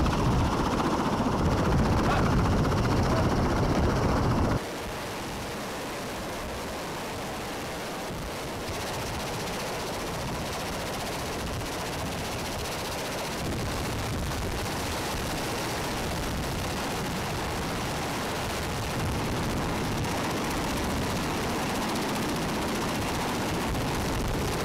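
V-22 Osprey tiltrotor running on the ground with its proprotors turning: a steady, heavy rotor noise. It is loud for the first few seconds, then drops suddenly to a lower, steady level that grows slightly louder toward the end.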